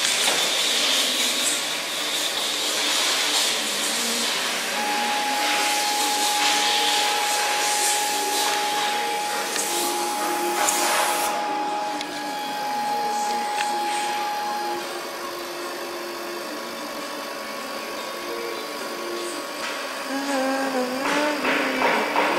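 CO2 laser cutting machine running while it cuts acrylic: a steady hissing machine noise, with a steady high whine from about five seconds in until about fifteen.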